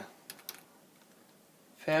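A few quick computer keyboard keystrokes about a third to half a second in.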